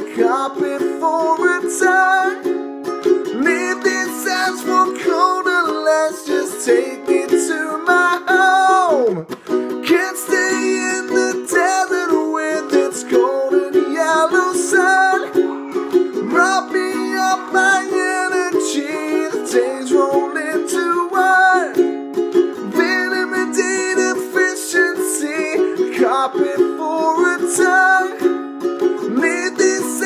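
Ukulele played through an instrumental break between verses: steadily strummed chords with a bending melody line over them and a long falling slide about nine seconds in.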